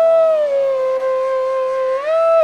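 Bansuri (Indian bamboo flute) playing a held note that slides slowly down to a lower note about half a second in, sustains it, and glides back up near the end. Underneath is a faint steady drone.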